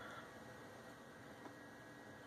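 Near silence: room tone, with one faint tick about one and a half seconds in.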